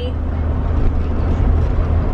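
Car cabin noise while driving: a steady low rumble of engine and road.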